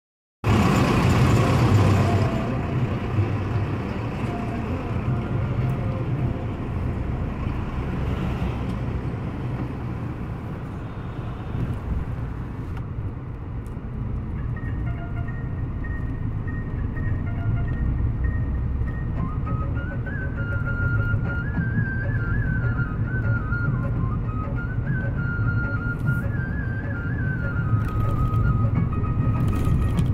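Cabin noise of a Mahindra Bolero driving along a highway: a steady low rumble of the diesel engine and tyres on the road. From about halfway in, faint music with a wavering melody is heard over it.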